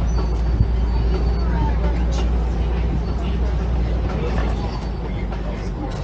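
Open-sided safari ride truck driving on a gravel track, its engine giving a steady low rumble under road and tyre noise as it swings around. Faint rider chatter runs beneath it.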